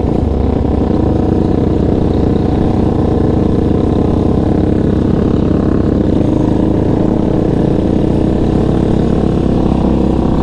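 Yamaha Raptor 700 sport quad's single-cylinder four-stroke engine running steadily as the quad rides along, loud and close to the microphone, with little change in pitch.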